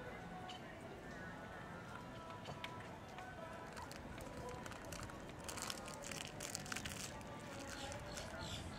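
Faint, indistinct voice and music in the background, with a quick run of soft hoofbeats from a cantering horse on the arena's sand footing in the second half.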